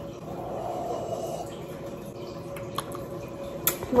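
A person quietly sipping milk tea from a mug, with a sharp click near the end.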